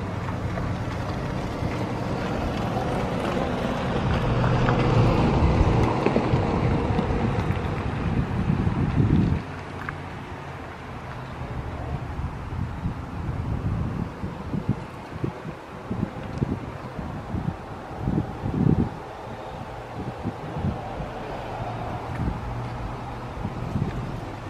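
Wind buffeting the microphone over a low, steady engine hum. Both are loudest for the first nine seconds or so, then drop off suddenly, leaving fitful gusts.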